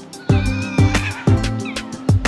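Background music with a steady drum beat, over which an Ezo red fox gives a high, wavering whine lasting about a second, then a short falling squeak near the end: the defensive squeal of a fox lying gape-mouthed under another fox in a squabble.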